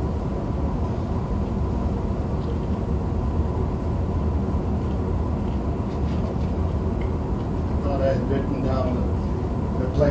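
Steady low rumble of room noise in a lecture hall, with a thin steady hum over it. A faint voice murmurs briefly near the end.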